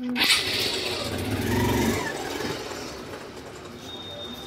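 Motorcycle engine starting and running, with a sudden start and a low engine note that swells for about a second before easing back toward idle.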